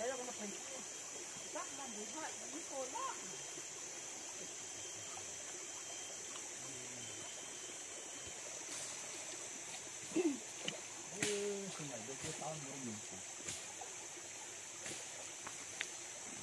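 Steady, high-pitched drone of forest insects, with a few faint murmured voices and light handling clicks now and then.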